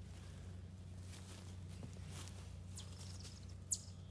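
Small engine of a field sprayer running steadily and faintly, driving the pump that agitates the tank mix. Near the end come two short, high chirps that fall in pitch.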